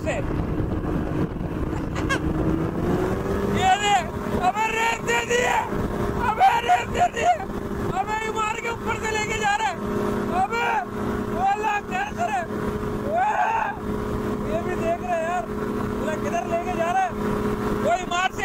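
Paramotor trike's engine and propeller running in flight with a steady drone, rising in pitch between two and three seconds in as the throttle is opened, then holding steady.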